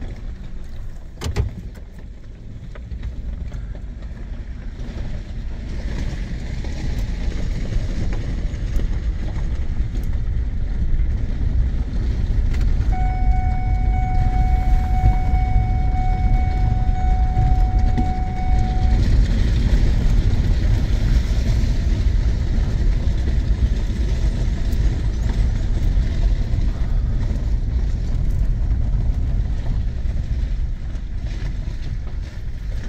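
Cab interior of a Ford F-150 pickup pulling away and driving slowly down a gravel driveway: a steady low engine and tyre rumble that builds over the first dozen seconds. A single click comes about a second in, and a steady single tone is held for about six seconds midway.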